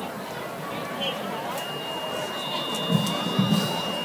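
Murmur of a stadium crowd's voices at a high school football game. A long, steady high-pitched tone comes in under it about one and a half seconds in and holds, and two low thumps sound about three seconds in.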